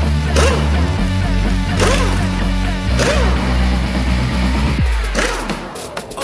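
Background music with sustained low chords and regular percussive hits; it thins out briefly near the end.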